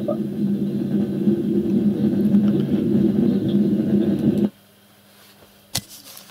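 Steady low hum and rumble of background noise coming over a video-chat connection, which cuts off suddenly about four and a half seconds in. A single sharp click follows near the end.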